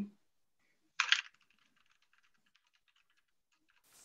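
Computer keyboard typing: a quick run of faint key clicks. A brief rush of noise comes about a second in.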